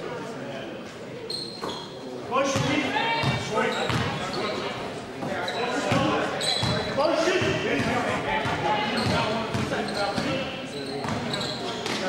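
Basketball game play on an indoor court: a ball bouncing on the hardwood floor amid players' and spectators' voices calling out, echoing in a large hall.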